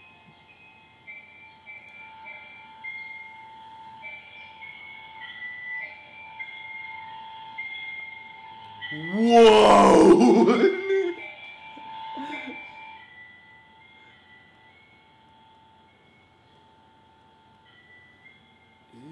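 Strange, atonal melody of slow, high single notes over a steady lower tone, played through a baby monitor's speaker; a loud shout of "whoa" breaks in about halfway through.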